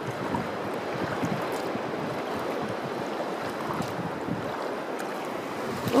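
Shallow Gulf water washing and lapping at the shoreline at low tide: a steady, even watery hiss.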